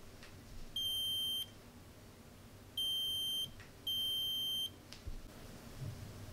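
Buzzer of a DIY metal detector kit beeping three times as it senses metal. Each beep is a steady high tone under a second long: one about a second in, then two close together around three and four seconds.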